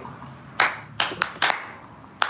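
A person clapping hands: about four sharp, uneven claps within a second.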